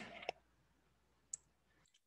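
Near silence, with one short, sharp computer-mouse click a little past halfway.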